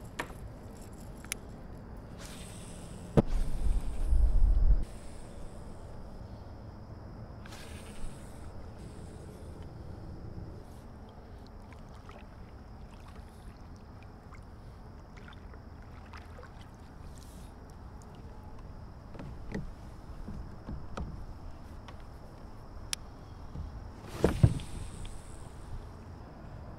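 Kayak paddling: double-bladed paddle strokes in the water with splashing and dripping, and scattered knocks of the paddle and gear against the plastic hull. A loud low rumble of handling lasts about two seconds a few seconds in, and a sharp knock comes near the end.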